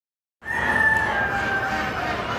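Domestic goose giving one long, drawn-out squawk that starts about half a second in and sinks slightly in pitch.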